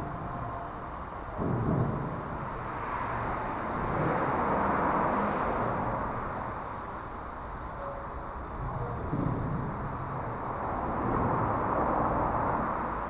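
Steady rumble of road traffic on the flyover overhead, echoing under the concrete deck and swelling and fading as vehicles pass, with a couple of brief low bumps.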